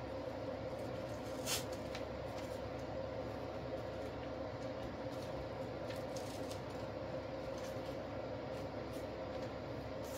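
Steady room hum with a faint steady tone, and a few soft clicks and rustles of artificial flower stems being handled and pushed into an arrangement, the clearest click about one and a half seconds in.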